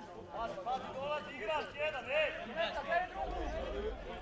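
Several men's voices calling out and talking over one another in the open air, as footballers and onlookers shout during play.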